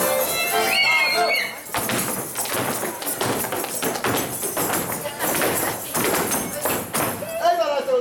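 Fiddle-led folk band music with a high shouted whoop breaks off about two seconds in. Dancers' feet then stamp a rhythm without music, and a long falling yell comes near the end.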